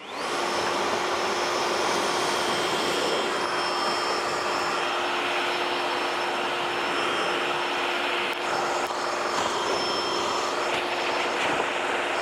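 Kress 60-volt cordless backpack leaf blower, spinning up at the start and then running steadily at high speed: a rush of air with a steady fan whine, clearing sticks and leaf litter off a corrugated metal roof.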